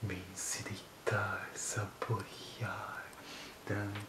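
A man's low, breathy, half-whispered voice in short broken phrases, with sharp hissing 's' sounds about half a second in and again at about one and a half seconds.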